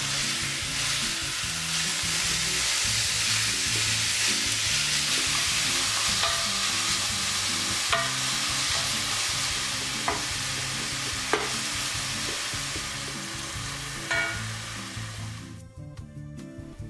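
Raw minced beef sizzling in olive oil in two stainless steel frying pans as it starts to brown, stirred and broken up with wooden spoons, with a few sharp knocks of the spoons on the pans. The sizzle cuts off just before the end.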